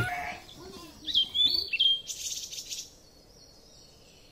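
Birds chirping: a run of short, high, gliding calls about a second in, then a higher buzzy call, dying away about three seconds in.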